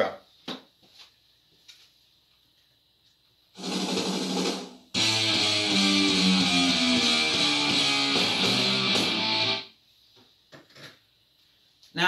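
Electric guitar: a chord rings for about a second and a half, starting some three and a half seconds in. After a brief break, a run of bar chords is played down the neck from A to C and back to A for about five seconds, then stops.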